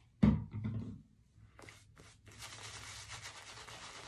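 A short thump about a quarter second in, then, from about two and a half seconds in, a shaving brush rubbing soap lather on the face, a steady soft rasp.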